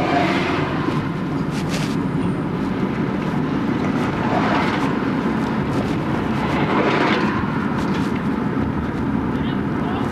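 Car road noise while driving through city traffic, heard from inside the car: steady engine and tyre hum, with passing traffic swelling up near the start, around the middle and again a little later.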